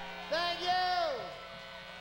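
A man's voice calls out one long drawn-out word that drops in pitch at the end, over a steady electrical hum, as a worn concert videotape cuts in.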